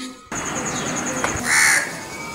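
A crow giving one short, loud caw about a second and a half in, over a steady outdoor background with a fast, high run of chirps just before it.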